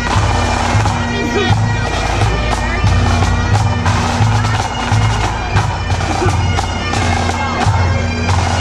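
A pipe band's bagpipes playing a tune over their steady drones, loud and close, with crowd voices faintly underneath.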